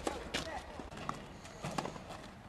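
Tennis ball hit by rackets and bouncing on a hard court: sharp pops, the loudest two at the start and about a third of a second in, and a smaller cluster near the end.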